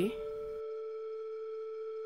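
Background music: one steady, held synthesizer note with a few overtones. The room sound under it drops out about half a second in.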